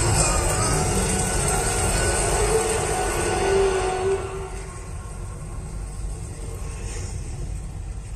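Film soundtrack played through home-theatre speakers and heard in the room: loud dramatic music over a deep rumble, which drops about four seconds in to a quieter low rumble.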